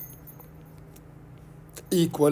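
A few faint taps of a stylus on a tablet's glass screen over low steady hiss.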